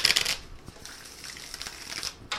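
Tarot cards being shuffled by hand: a dense burst of card flicking in the first half second, then faint rustling.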